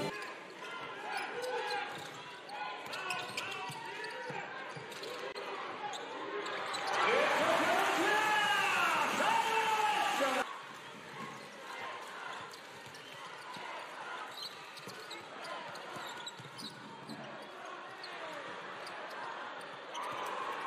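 Live basketball game sound in an arena hall: a ball bouncing on the court and crowd voices. About seven seconds in, a loud burst of crowd cheering rises and then cuts off abruptly a few seconds later.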